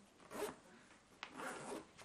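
Zipper on the side pocket of a Condor Urban Go backpack being pulled in two short strokes, the second starting with a sharp tick.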